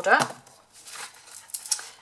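Scored cardstock being handled on a craft mat: faint rustles and a few light taps after a brief word.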